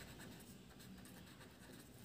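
Very faint scratching of a felt-tip marker writing letters on paper.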